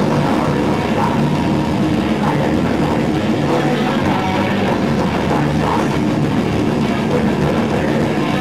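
Metalcore band playing live: distorted electric guitars, bass and drums, loud and unbroken.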